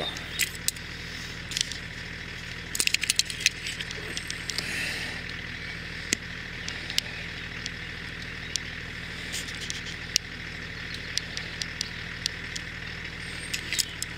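A car engine idling with a steady low hum, over irregular footsteps on gravel and grass.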